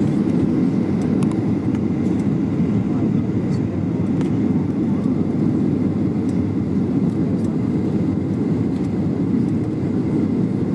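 Steady cabin roar inside a Boeing 737-700 on final approach: airflow and its CFM56-7B turbofan engines, deep and unbroken, with a few faint ticks.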